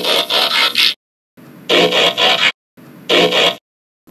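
Mechanical scraping and ratcheting transformation sound effect for a robot changing from cassette player to robot form, in three bursts of about a second each with short gaps between them.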